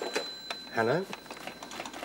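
Desk telephone handset being picked up from its cradle: a few sharp clicks and clatters as the ringing stops, more handling clicks near the end, and a man's brief "hello" about a second in.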